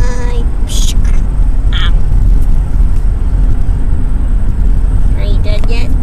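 A few brief, high, squeaky voice sounds from a person: one at the start, one about two seconds in, and a few near the end. They sit over a loud, steady low rumble.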